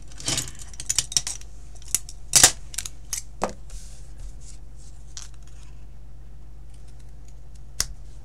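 Small scissors snipping a strip of white paper: a quick run of sharp snips and clicks in the first few seconds, the loudest about two and a half seconds in, then only a few faint taps.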